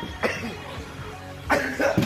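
A person coughing hard in two bursts, the first just after the start and the second at about one and a half seconds, with music faint in the background. It is the coughing of someone who has just taken an inhale they call strong.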